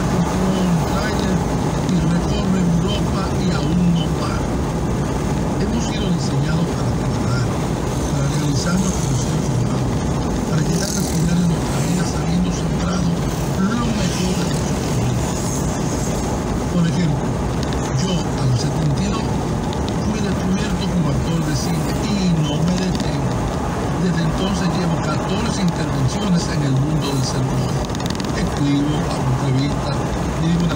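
A man's voice talking over the steady road and engine noise of a moving car heard from inside the cabin.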